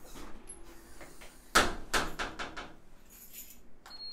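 A glass entrance door is pulled open and swings shut, with a sharp clack about one and a half seconds in and a short rattle of clicks after it. Near the end there is a light jingle of keys, and a fob reader gives one short high beep as the fob is held to it.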